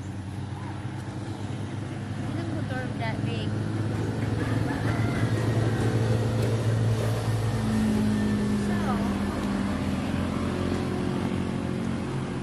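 A motor vehicle's engine passing on the road, a steady low hum that grows louder toward the middle and fades toward the end.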